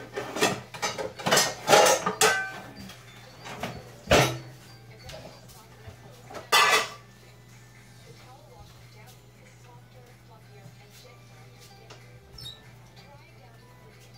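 Metal pots and pans clattering as a pan is dug out of a kitchen cupboard: a run of clanks in the first couple of seconds, then a single bang about four seconds in and another clatter about six and a half seconds in.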